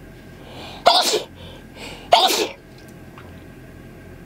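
A woman sneezing twice, about a second and a half apart, each sneeze preceded by a short breath in.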